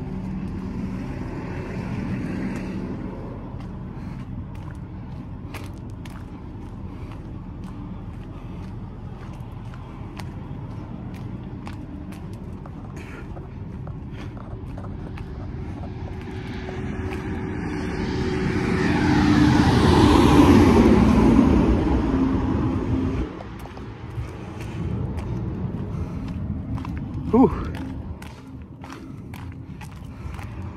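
Heavy diesel truck engines idling steadily, with a passing heavy vehicle that swells to the loudest point about two-thirds of the way through and then drops away.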